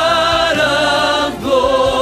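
Music: voices singing long, held notes with vibrato and no clear words, moving to a new chord about one and a half seconds in.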